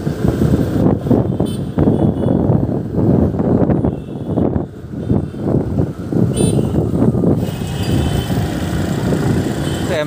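Wind buffeting the microphone on a moving motorcycle: a dense, irregular rumble, with the motorcycle and surrounding road traffic underneath.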